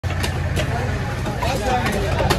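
Busy fish-market din: background voices over a steady low engine rumble, with a few sharp knocks.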